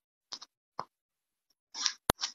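A few short, faint pops, with a slightly longer puff near the end.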